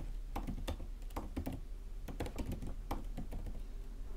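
Typing on a computer keyboard: a quick, irregular run of keystroke clicks, about four a second.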